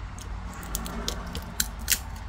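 Light clicks and ticks of a plastic sunglasses arm being pried open with a small precision screwdriver, with two sharper clicks near the end as the arm's shell comes apart.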